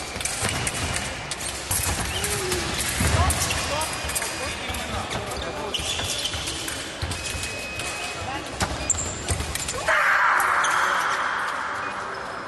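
Fencers' footwork on a piste in a large echoing sports hall: repeated thuds of feet and short squeaks of shoe soles on the floor, with voices in the background. About ten seconds in, a hissing noise starts suddenly and fades away.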